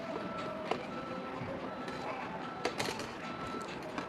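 A few light clicks and rustles of thin copper wire being wound by hand around a battery's carbon rod, over a steady low hiss.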